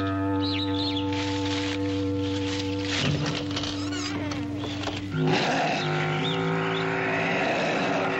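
Film score of sustained low droning notes with high animal cries over it, as in a jungle soundtrack. About five seconds in, the music moves to a new set of held notes.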